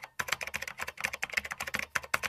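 Keyboard typing sound effect: a fast, continuous run of key clicks with a short break near the start, timed to on-screen text being typed out.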